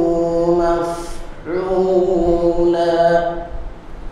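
A man reciting the Quran in a melodic chant, drawing out long held vowels in two phrases. The recitation stops about three and a half seconds in.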